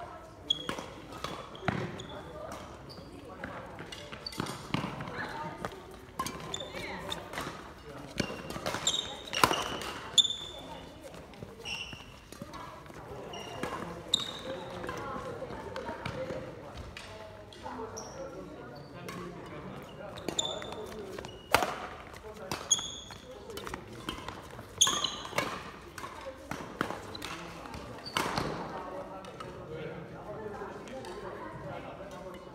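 Badminton rally on a wooden sports-hall floor: sharp racket strikes on the shuttlecock, with short high squeaks of court shoes on the floor. The hall is echoing.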